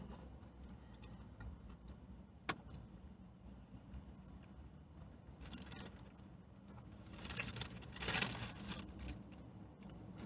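Paper burger wrapper rustling and crinkling in the hands, in a short bout about five and a half seconds in and loudest from about seven to nine seconds in, with one sharp click earlier.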